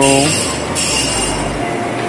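Steady hiss of workshop machinery with a thin high-pitched whine running through it, after a short word from a voice at the start.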